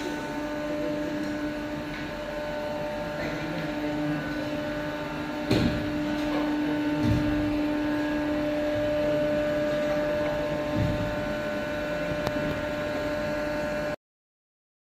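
Aerosol filling machine's motor or pump running with a steady hum, with a few dull knocks from the machinery about five and a half, seven and eleven seconds in.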